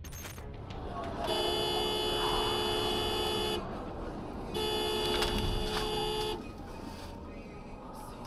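Car horn sounding two long blasts of about two seconds each, with a short gap between, over road noise.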